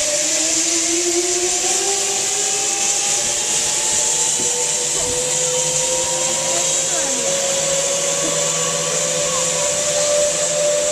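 Zipline trolley pulleys running along the steel cable, a whine that rises slowly and steadily in pitch as the riders pick up speed down the line.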